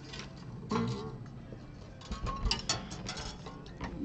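Small scattered clicks and ticks of guitar strings and tuning machines being handled as a string is wound onto its tuning post, most of them between two and three seconds in. A brief low pitched sound comes just under a second in.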